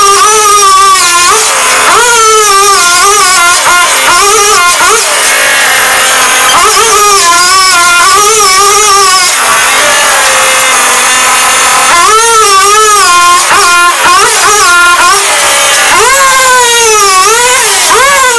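Gas-powered earth auger engine running hard as it bores into wet clay, its pitch rising and dipping over and over as the load on the bit changes. It eases off briefly twice, about five seconds in and again around ten seconds in.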